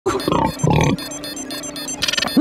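Two short pig-like grunts from a cartoon warthog mutant in the first second, over a background music score. After that the music carries on more quietly, with a steady ticking beat and a held low note.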